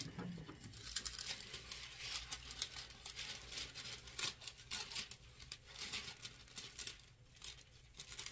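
Thin craft foil and tape film crinkling and rustling in the hands, a run of small irregular crackles.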